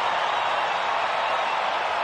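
Stadium crowd cheering and applauding a goal, a steady wash of crowd noise.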